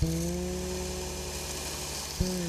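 Backstand belt grinder running with a steady hum while a horn knife-handle blank is ground against its abrasive belt to remove excess material.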